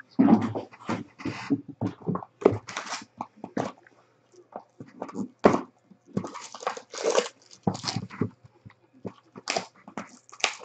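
Clear cellophane wrap being torn and crinkled off a trading-card box, in quick irregular crackles with short pauses between.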